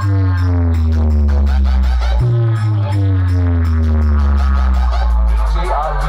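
Loud electronic dance music from a large DJ speaker wall, its deep bass notes each sliding slowly downward, a new one starting about two seconds in; the deep bass drops away near the end.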